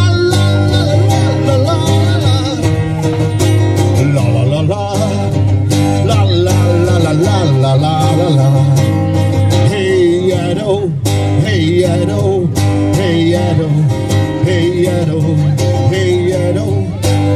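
Live performance of a song on strummed acoustic guitar and a second guitar, with singing over the top.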